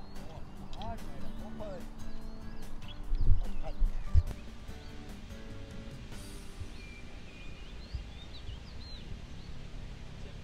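Outdoor ambience, with soft background music and a few low thumps of wind on the microphone in the first half. After a cut, small birds chirp over a steady hiss.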